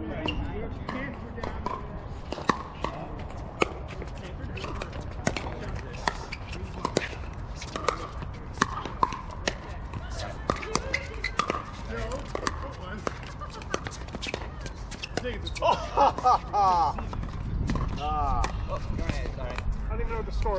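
Pickleball paddles striking the hollow plastic ball in a rally: sharp pops, the louder ones coming a second or so apart, among fainter pops from other courts. Players' voices break in near the end.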